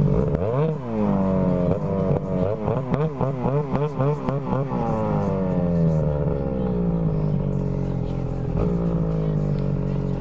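Snowmobile engine revving, blipped up and down several times a second in the middle, then winding down to a steady lower speed near the end: the rider working the throttle of a sled stuck in snow.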